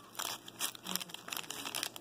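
Foil wrapper of a Pokémon TCG booster pack crinkling as it is held and squeezed in the fingers, a run of irregular crackles.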